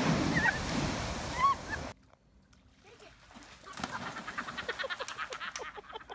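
Ocean wave crashing over a seawall, a loud rush of spray with a couple of brief cries on top, cut off suddenly about two seconds in. After a short quiet gap comes a fainter, rapid series of short pulses, about six a second.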